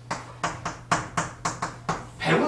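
Chalk striking and scraping on a chalkboard as characters are written: about eight short, sharp strokes in quick succession, starting about half a second in.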